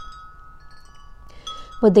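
Wind chime ringing: a few sustained, clear metal tones hang on through the pause, with a fresh cluster of notes struck about a second and a half in.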